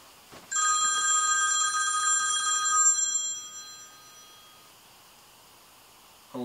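A phone ringing: one ring that starts about half a second in, holds steady for about two and a half seconds, then dies away over the next second or so.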